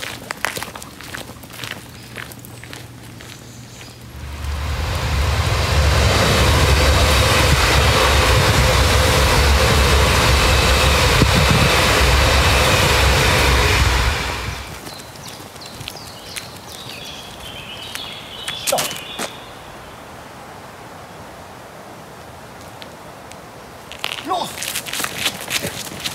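Regional passenger train crossing a rail bridge overhead: a loud, deep rumble that swells up about four seconds in, holds steady for about ten seconds, then dies away.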